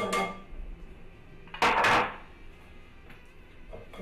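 Starch-coated diced water chestnuts poured out of a bowl in one short, loud rush about one and a half seconds in.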